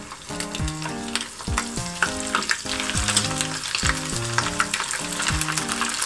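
Blacktip grouper scales deep-frying in hot oil in a small pan, a steady crackling sizzle as they crisp. Background music with a steady beat plays underneath.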